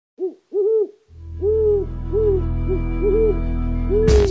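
Owl hooting as the sound of an animated cartoon owl: short hoots that rise and fall in pitch, two in the first second and several more over a steady low drone that starts about a second in.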